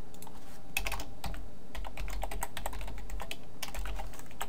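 Typing on a computer keyboard: quick runs of keystrokes starting about a second in, with short pauses between runs.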